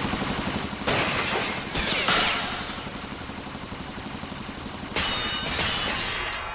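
Anime sound effect of a magical energy blast: a sudden dense crackling rush that surges again about a second in and two seconds in, eases off, then swells once more near the end.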